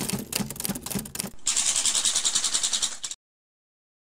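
Split-flap counter sound effect: a quick run of sharp clicks, then about a second and a half of fast fluttering flaps that stops suddenly.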